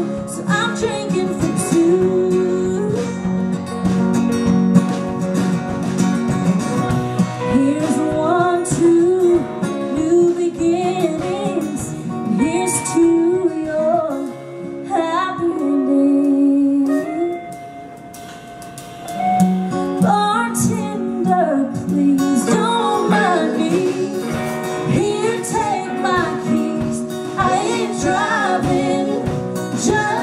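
Woman singing a country ballad live with guitar accompaniment. A little past the middle the music drops to a quieter, held stretch, then the voice comes back in with full-voiced phrases.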